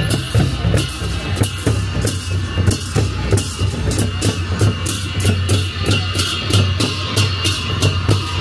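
Drums and cymbals playing a fast, steady beat, with bright cymbal strikes over a low drum.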